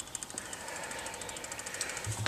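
Video camera's zoom motor running as the lens zooms out, a faint, rapid, even ticking.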